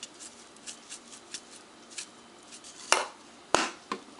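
Light taps and clicks of seasoning being shaken from a container into a stainless steel bowl, with two sharper clicks about three seconds in, half a second apart.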